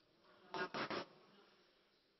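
A brief, faint buzz about half a second in, lasting about half a second in two short pulses; otherwise near silence.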